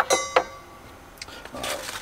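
Small hardware clinking as mounting parts are handled in the box: a sharp clink with a brief metallic ring, a second knock just after, then a click and a short rustle of packaging near the end.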